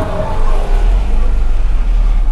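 Steady low rumble of a car's engine and road noise heard from inside the cabin as the car drives slowly.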